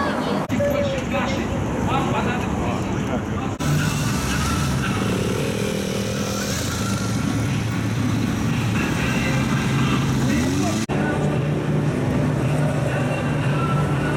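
Motorcycle engines running among crowd chatter, across several edited shots that change abruptly. One engine revs up briefly about ten seconds in.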